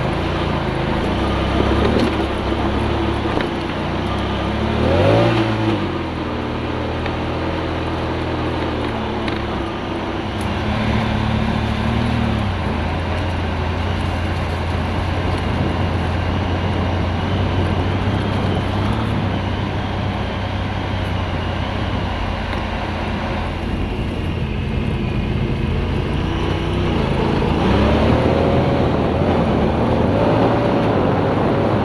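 Honda Pioneer 1000 side-by-side's twin-cylinder engine running as it drives over dirt and gravel, with tyre and road noise underneath. The engine climbs in pitch about five seconds in, and again near the end as the vehicle speeds up.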